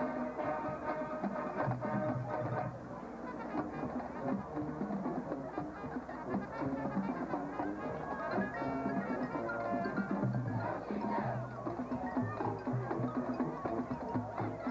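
High school marching band playing on the field: brass section and drumline together, with sustained brass chords over a steady drum beat.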